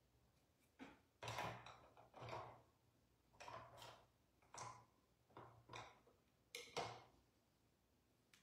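Near silence broken by a few faint handling noises: about eight soft clicks and rustles at irregular intervals, over a low steady hum.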